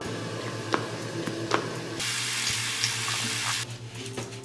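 Bathroom sink tap running over hands being washed, with a couple of light knocks in the first half. The water runs harder from about two seconds in and is shut off shortly before the end.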